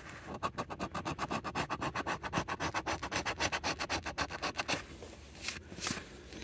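A coin scraping the coating off a scratch-off lottery ticket in rapid back-and-forth strokes, about seven a second, for roughly four and a half seconds, then stopping. One short scrape follows near the end.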